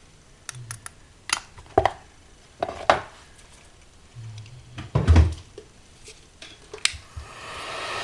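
Clicks and knocks of a plastic embossing-powder box being handled and shut and a small tile being set down, the loudest a thump about five seconds in. Near the end an embossing heat gun switches on and its blower noise builds.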